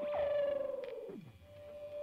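An electronic tone that holds briefly, then slides steeply down in pitch over about a second with a fast wobble. A steady higher tone comes back near the end.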